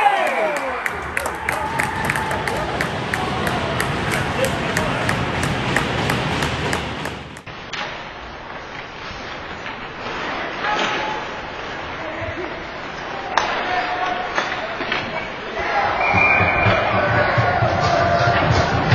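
Live ice hockey game sound: indistinct shouts from players and spectators in the rink, with sharp knocks of sticks and puck against the boards and glass. About seven seconds in the sound turns duller as the footage changes to another game.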